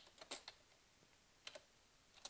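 Faint computer keyboard keystrokes as a command is typed: a quick run of a few keys in the first half second, then a single key about one and a half seconds in.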